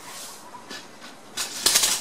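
Hands handling craft materials on a work table: after a quiet start, a short burst of rustling and clicking about a second and a half in.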